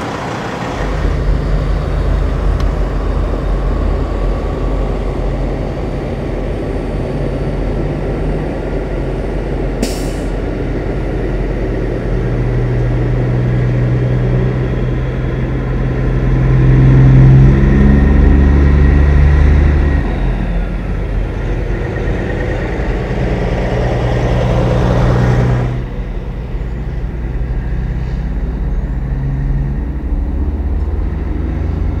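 Big-rig diesel engine pulling away and working up through the gears, its pitch stepping at each shift and loudest about two-thirds of the way through. There is a brief air hiss about ten seconds in.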